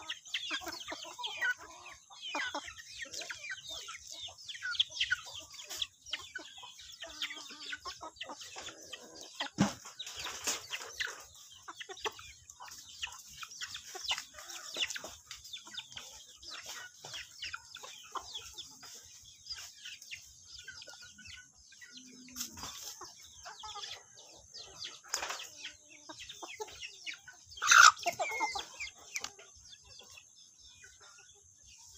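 A flock of chickens clucking as they feed, with many small pecking taps on the ground and one louder call near the end.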